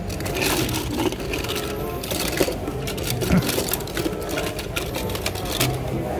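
Loose die-cast toy cars clattering and clicking against one another in a cardboard box as a hand rummages through them, with many quick, irregular clicks.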